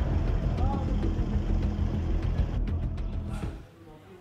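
Outdoor street noise at a bus and rickshaw lot: a heavy low rumble with faint voices, which cuts off about three and a half seconds in.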